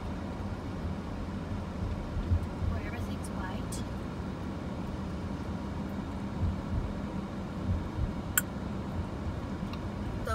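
Steady low rumble of road and engine noise heard from inside a moving car's cabin, with a single sharp click about eight seconds in.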